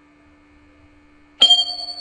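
A single electronic notification chime: a bright ding that strikes sharply about one and a half seconds in and rings on, after a faint steady hum.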